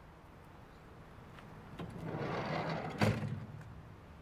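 A van's sliding side door rolled along its track and slammed shut about three seconds in, ending in one sharp knock.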